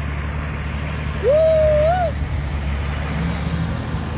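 Several 4x4 engines running steadily under load, a continuous low drone, as they tow a flood-wrecked pickup out of deep mud on tow ropes. About a second in, one person gives a single drawn-out shout, rising and then falling.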